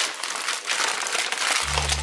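Paper shopping bag and plastic wrapping crinkling and rustling as a child rummages through the bag and pulls out a package. A steady low bass line of background music comes in near the end.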